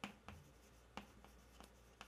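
Chalk writing on a chalkboard: faint, sharp taps and short scratches as the strokes of characters are written, the strongest at the start and about a second in.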